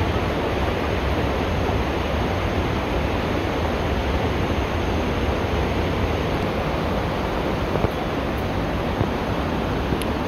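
Steady, even rushing noise with no breaks or rhythm.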